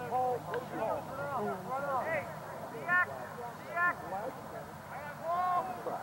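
Scattered shouts and calls from players and spectators across a lacrosse field, heard at a distance, with louder calls about three seconds in, about four seconds in and near the end.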